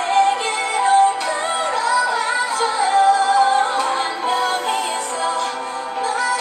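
A K-pop ballad playing: a woman singing a melodic line over instrumental backing.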